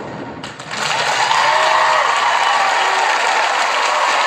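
Studio audience applauding, with a few voices cheering, breaking out about a second in as the song's last note dies away and then holding steady.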